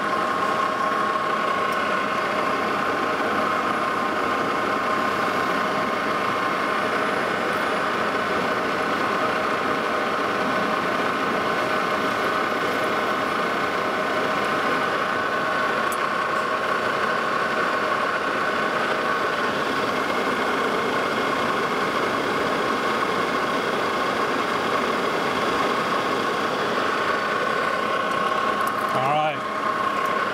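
Lodge and Shipley engine lathe running steadily with a constant tone, its cutting tool facing off the shoulder of a high-carbon steel bolt blank.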